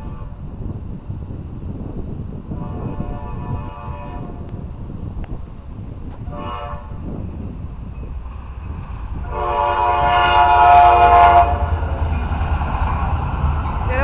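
Horn of a Tri-Rail F40PH-2C diesel locomotive sounding the grade-crossing pattern as the train approaches. A long blast comes about three seconds in, then a short one, then a final long blast, the loudest, about nine seconds in. A low rumble from the approaching train grows louder underneath throughout.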